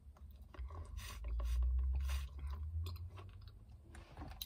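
Mouth sounds of someone drinking an icy slushie through a straw: slurps, chewing on the slush and swallowing, with a few short noisy bursts between about one and two seconds in. A steady low hum runs underneath.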